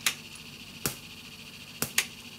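Sharp static ticks in a Pioneer CT-F950 cassette deck's audio in play mode, three about a second apart over a faint steady hiss. It is the deck's intermittent static tick fault at its worst, which the owner puts down to static buildup and poor earthing.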